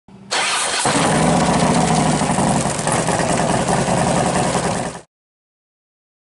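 A motorcycle engine being started: a brief whirr of the starter, then the engine catches within a second and runs. The sound cuts off abruptly about five seconds in.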